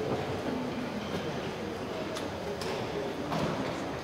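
Indistinct murmur of voices and shuffling in a large reverberant gym, with a few faint clicks; the band is not playing.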